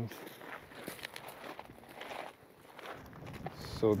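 Footsteps on a loose gravel path: a run of short, irregular steps on small stones.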